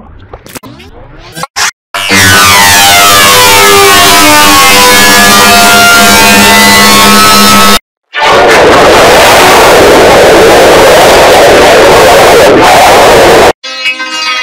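Digitally warped and distorted audio from a video-effects edit. About two seconds of quieter, choppy, pitch-warped sound come first. Then come two blasts of extremely loud, clipped sound, each about five to six seconds long, with a brief cut to silence between them: the first is full of wavering, bending tones and the second is mostly harsh noise.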